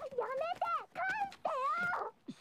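A high-pitched Japanese anime voice from the episode, speaking in several short phrases whose pitch slides up and down.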